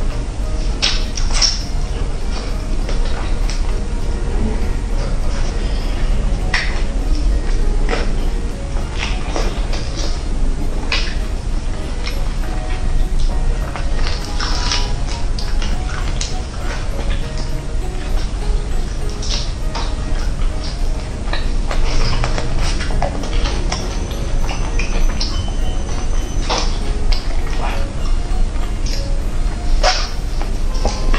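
Background music, with close-miked eating of a roast chicken: chewing and the crackle of skin and meat being torn by hand, in many short sharp clicks throughout.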